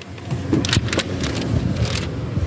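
A few sharp clicks and handling rustle as a car's side door is unlatched and swung open, over a low steady rumble.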